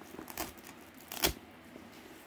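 Folding knives being handled: faint rustles and small clicks, with one sharp click just over a second in.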